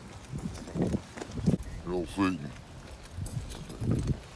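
Indistinct voices of people talking, with scattered knocks and rustles.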